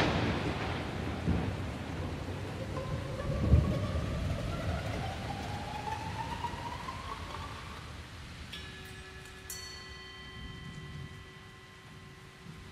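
Thunderstorm sound effect: a thunderclap's rumble and rain-like hiss fading away, with a slowly rising whistle through the middle. Faint, steady chime-like tones come in near the end.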